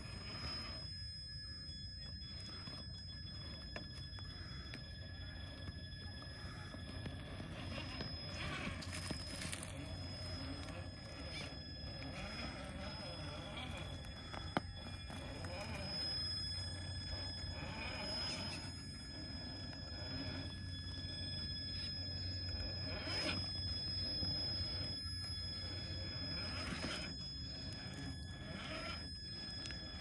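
Traxxas TRX-4 RC crawler's stock brushed motor and drivetrain running faintly and steadily as the truck creeps over tree roots, with scattered light scrapes and one sharp click about halfway through.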